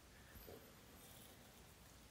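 Near silence: room tone, with one faint brief sound about half a second in.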